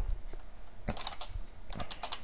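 Computer keyboard typing: a quick run of keystrokes about a second in, then another run near the end.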